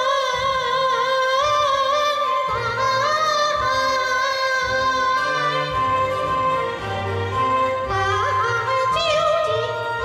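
A woman singing a jingge, a Peking-opera-style song, holding long high notes with wide vibrato and ornamented turns, over instrumental accompaniment.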